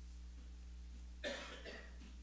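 A person coughs once about a second in, with a smaller second cough just after, over a steady low electrical hum.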